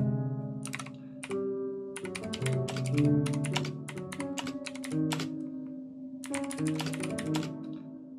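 Fast typing on a backlit computer keyboard, the key clicks coming in quick runs with short pauses. Each keystroke triggers a sustained note in Ableton Live, so the typing plays a wandering line of overlapping notes under the clicks.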